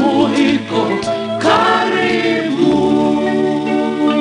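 Swahili gospel song: voices singing a moving melody over musical backing, settling about two and a half seconds in onto a long held chord.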